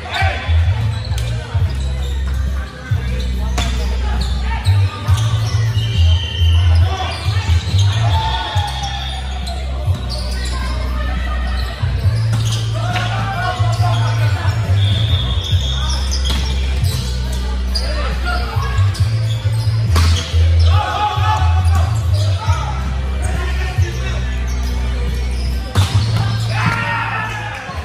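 Indoor volleyball play in a large hall: the ball being struck, players calling out, and background music with a heavy bass, all echoing in the room.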